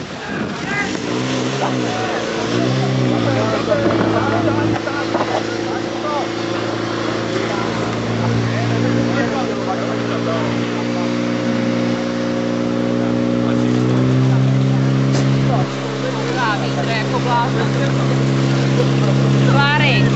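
Portable fire pump engine blipping twice, then running flat out under load while it pumps water through the hose lines. Its note climbs a step higher about two-thirds of the way through as the nozzles open up. Voices shout over it near the end.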